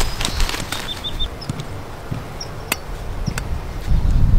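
A soccer rebounder net being handled and unfolded, its mesh and fabric straps rustling and flapping. A few sharp clicks and brief squeaks come from the frame and fittings.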